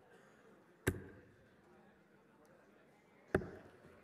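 Two darts striking a Winmau Blade 6 bristle dartboard, each a sharp, short impact, about two and a half seconds apart, over faint arena background noise.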